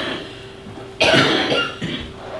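A person coughing: a short cough at the start and a stronger, longer cough about a second in.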